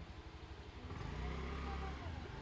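A motor vehicle's engine running, a low hum that grows louder about a second in.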